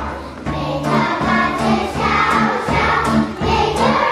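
Children singing together over recorded backing music with held bass notes.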